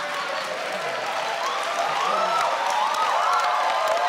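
Studio audience applauding and cheering. Voices call out over the clapping from about halfway through.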